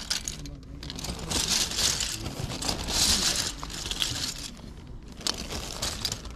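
Thin plastic carrier bag crinkling and rustling as hands rummage through it, with small hard plastic toys clicking against each other inside. The rustling comes in irregular swells, loudest about one and a half and three seconds in.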